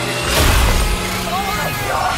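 Trailer sound mix: a sudden heavy hit about half a second in over low droning music, then a frightened voice crying out in the second half.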